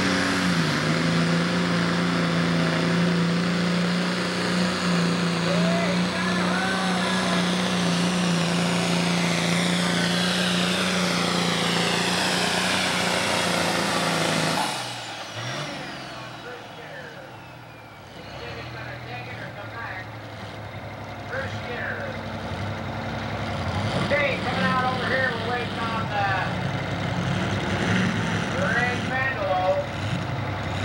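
Pro Stock pulling tractor's diesel engine at full throttle hauling the weight sled: a loud, steady drone with a high whine that falls slowly in pitch. About halfway through it cuts off suddenly, leaving a quieter tractor engine idling and people's voices.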